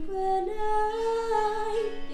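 A woman singing a song from a musical, holding one long note that steps up in pitch about half a second in.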